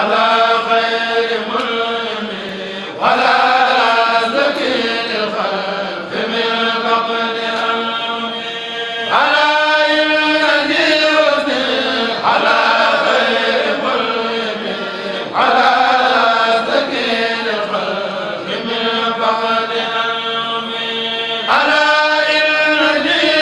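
A Mouride kourel, a group of male chanters, chanting a khassida together without instruments. The chant comes in loud phrases that start strongly about every three seconds and die away.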